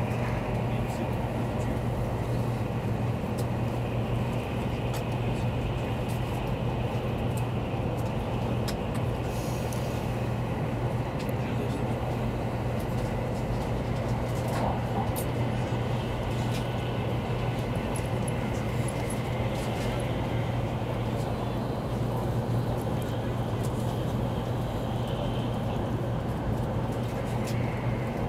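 Steady running noise of a Taiwan High Speed Rail 700T train at speed, heard inside the passenger car: a constant low hum under an even rushing noise.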